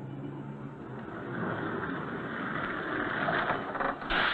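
A rushing mechanical noise, like a vehicle, building steadily and growing loud toward the end. Faint music fades out at the start.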